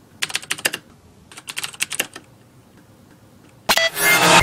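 Computer keyboard typing sound effect: two short runs of quick keystroke clicks, about a second apart, followed near the end by a sudden loud hit.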